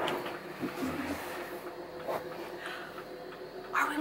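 Motorhome engine running with a low steady hum as the RV backs slowly off its leveling blocks, with faint murmuring.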